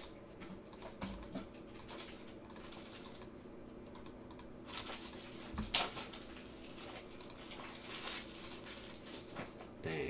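Computer keyboard typing and clicks at a desk, scattered and light, with one sharper click about halfway through.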